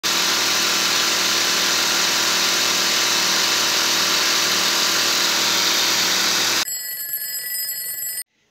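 Three small air compressors running together, a 12-volt car tyre inflator, a nebulizer compressor and a vacuum-sealer pump, each blowing up a party balloon with a loud, steady mechanical drone. Near the end the drone cuts off abruptly and a quieter alarm-clock-style ring of steady high tones follows.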